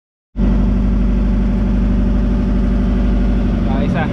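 Outrigger bangka boat's engine running loudly and steadily, a low drone that cuts in abruptly about a third of a second in. A voice begins near the end.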